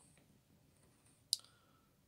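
Quiet room tone broken by a single sharp click a little over a second in.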